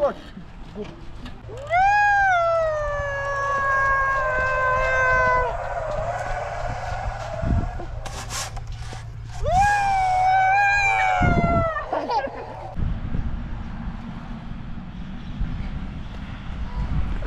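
Playground flying fox in use: the trolley runs along the steel cable with a steady low rumble, and two long high wails come over it, the first about two seconds in, jumping up and then slowly falling over some four seconds, the second shorter, near ten seconds in.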